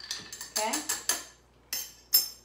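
A few separate sharp clinks of a metal bar spoon and bar tools against a glass mixing glass of ice as a stirred cocktail is finished, the loudest clink coming at the very end.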